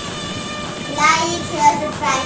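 A child's voice sounding short sung notes over steady background music, once about halfway through and again near the end.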